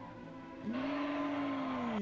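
Soundtrack of the anime episode playing: a single held tone over a hiss that starts under a second in and sags slightly in pitch near the end, like a dramatic sound effect or music swell.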